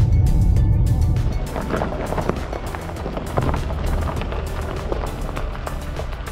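Background music with a steady beat, over the low rumble of a car driving along a back road; the rumble drops away a little over a second in.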